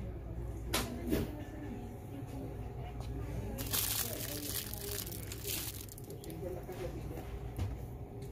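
Plastic candy packaging crinkling as it is handled, a dense crackle for about two seconds in the middle, after two light clicks about a second in. Voices murmur in the background.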